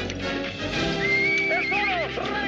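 A horse whinnies as it rears, a wavering call starting about a second in, over background film music.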